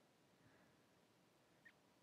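Near silence: no audible sound, apart from a barely perceptible tiny tick late on.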